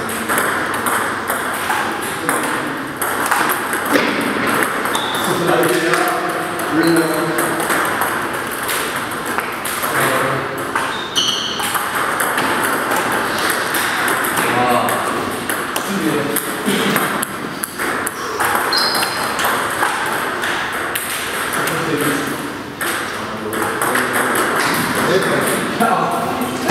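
Table tennis ball being hit back and forth, sharp clicks of the ball on the rubber paddles and bouncing on the table, repeated through rallies, with men's voices talking in the background.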